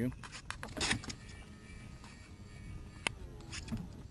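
Low wind-and-water noise on an open boat, with a few sharp clicks and knocks from gear on the boat. The loudest click comes about three seconds in.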